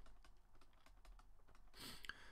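Faint, quick taps and scratches of a stylus writing on a tablet screen.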